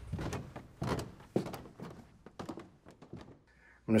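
A run of dull thunks and knocks as a person walks away through a doorway, dying down to near silence about three and a half seconds in.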